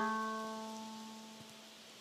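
A single pitched note from a Music of the Plants device, whose tones are generated from a pine tree's electrical signals and played through a portable speaker. The note sounds at the start and fades away over about a second and a half.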